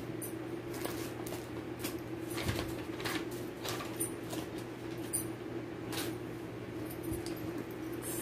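Project bags being handled and rummaged through, with scattered light rustles and small clicks every second or so, over a steady low hum.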